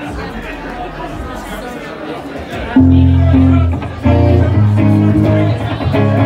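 Crowd chatter in a room. About three seconds in, a live band cuts in with loud, held low bass notes and electric guitar, breaks off briefly, then comes in again about a second later.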